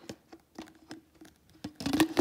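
A few light, scattered clicks and scrapes of hard plastic being handled: a water filter cartridge being fitted into its plastic filter bottle.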